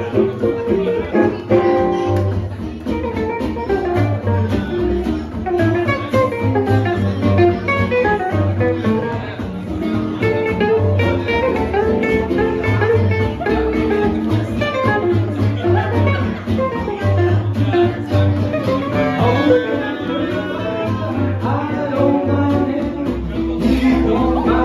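Live acoustic swing jazz band playing: acoustic guitars strumming a steady rhythm over an upright bass, with a melody line on top.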